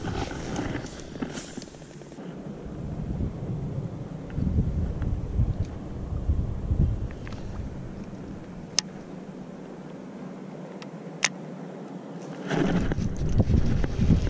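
Wind buffeting the camera microphone as a low, uneven rumble that rises and falls, with two sharp clicks in the second half and a louder gusty rush near the end.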